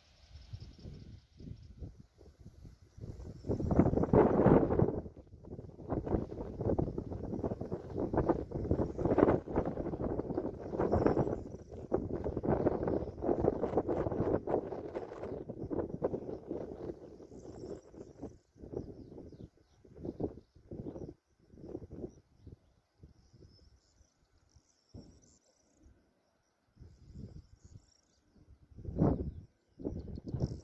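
Wind gusting on an outdoor microphone, heaviest in the first half and then coming in short separate puffs, with faint bird chirps above it.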